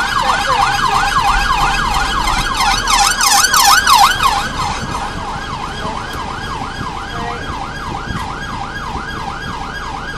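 Police car siren wailing in a fast up-and-down sweep, about three sweeps a second. It is loudest about three to four seconds in, then carries on a little quieter.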